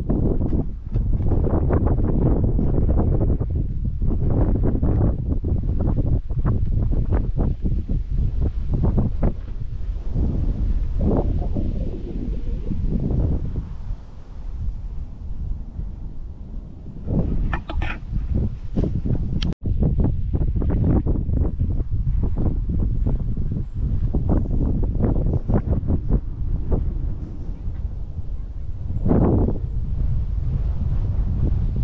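Wind buffeting the microphone on an exposed hilltop: a loud, gusty rumble that swells and eases throughout, with a momentary break about two-thirds of the way through.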